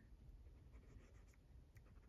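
Faint scratching of a Staedtler Mars Lumograph digital jumbo stylus nib on the screen of a Boox Note Air 3C e-ink tablet, writing short zigzag strokes.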